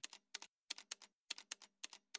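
Faint computer keyboard typing: a handful of separate keystroke clicks in small quick groups as a name is typed in.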